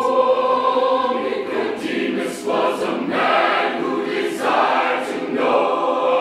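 Mixed choir singing a gospel spiritual in full harmony, held chords with a few crisp 's' sounds between phrases.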